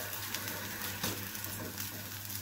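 Paratha frying in butter on a hot tawa, a steady sizzle.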